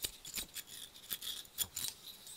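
Light, irregular clicks and small scrapes from a wooden kendama and its string being handled on a tabletop.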